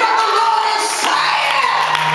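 Raised voices shouting and singing through a church PA, with a steady low held note coming in about a second in.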